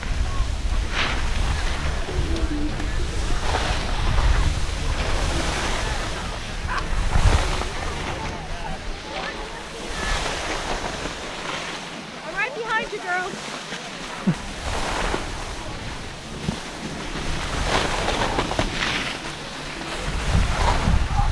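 Skis swishing and scraping through soft, lumpy mogul snow, with wind buffeting the microphone in a low rumble that rises and falls. A short, high pitched call is heard about two-thirds through.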